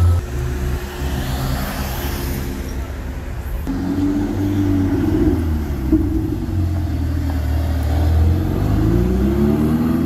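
Supercar engines accelerating away, a Lamborghini Huracán and a Ferrari together. The engine note climbs, drops back about six seconds in, then climbs again, over the general noise of street traffic.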